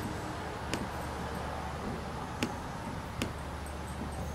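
Laptop keys or trackpad clicked now and then: four separate sharp clicks spread unevenly over a steady low hum.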